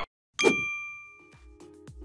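Intro-animation sound effect: a single bright, bell-like ding about half a second in, ringing out and fading over about a second. Faint music comes in near the end.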